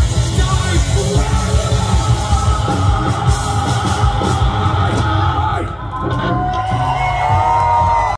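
Live rock band playing loud with a singer yelling over heavy drums. The music drops briefly a little before six seconds in, then comes back with long held notes near the end.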